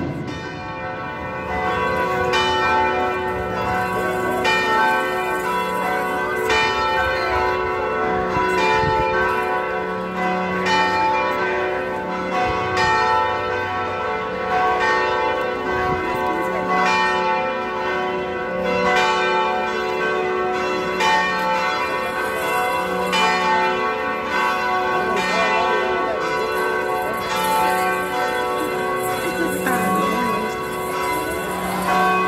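San Luis Potosí Cathedral's tower bells pealing a continuous repique, the second call to Mass. Bells are struck in quick succession and their tones ring on and overlap, with a deeper bell sounding at a steady beat underneath.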